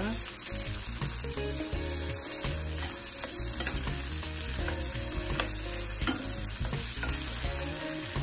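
Sliced green bell peppers and onions sizzling in a copper-coloured nonstick frying pan as they are stirred with a spatula, which scrapes and taps against the pan now and then.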